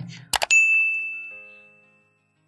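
Two quick clicks, then a single bell-like ding that rings on and fades out over about a second and a half: the notification-bell sound effect of a subscribe-button animation.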